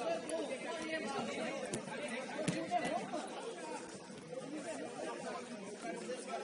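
Indistinct chatter of several people's voices, overlapping, with no clear words. Two short sharp knocks stand out, about a second and a half in and again about a second later.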